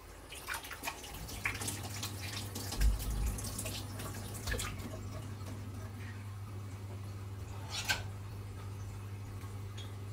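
Marinated fish steaks starting to fry in a pan, with scattered crackles and pops, most of them in the first five seconds and one more near eight seconds. A steady low hum sets in about a second in, and there is a low thump about three seconds in.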